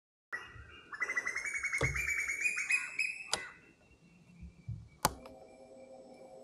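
A bird singing a rapid, rattling trill of quick chirps for about two and a half seconds, with a few sharp clicks. A loud single click comes about five seconds in.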